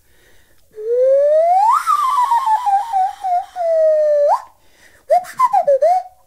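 Nose flute blown through the nose, a whistling tone whose pitch is changed by opening and closing the mouth: it slides up, wavers down in small steps, flicks up and stops, then plays a short warbling phrase near the end.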